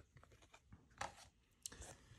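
Near silence with faint handling sounds: a few soft rustles and ticks as paper card inserts are lifted out of a plastic Blu-ray case, the loudest about a second in.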